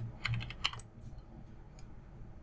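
Computer keyboard typing: a quick run of keystrokes in the first second, then a few scattered ones.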